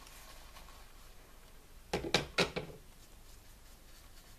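Three or four quick, sharp knocks close together about two seconds in, over faint room tone, from make-up items being handled.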